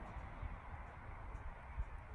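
Faint outdoor ambience: a low, unsteady rumble with a soft hiss over it, and no distinct event.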